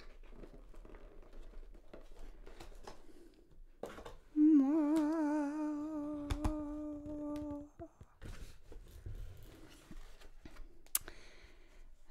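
A woman humming one note for about three seconds, starting with a wobble in pitch and then held steady, about four seconds in. Faint taps and rustles of a cardboard box being handled and opened come before and after it.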